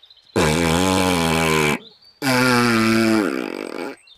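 Two long, buzzy raspberries blown with the lips, one after the other with a short gap, the second falling slightly in pitch at its end: rude noises traded between two children.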